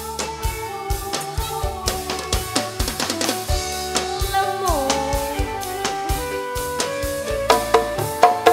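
Live dangdut band playing an instrumental passage: drum kit and hand drums keep a steady beat under sustained keyboard notes. About halfway through, one note slides down, and the drumming hits harder near the end.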